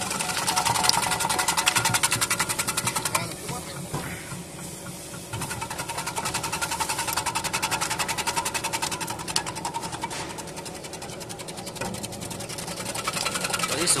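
Electric banana chips slicing machine running, its spinning cutter disc slicing produce pushed down the feed tubes, with a fast, even clatter of blade strokes over the motor's hum. The clatter eases for a couple of seconds a few seconds in, then picks up again.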